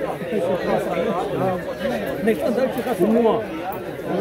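Several people talking at once: overlapping conversational chatter among a small group, with no single clear voice.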